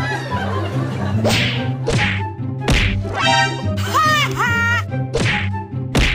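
Background music with a steady low beat, over which comedy whip-swish sound effects land four times, and a warbling, pitch-bending sound effect plays in the middle.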